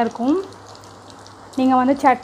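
Potato-and-vermicelli cutlets deep-frying in a pan of hot oil: a steady sizzle.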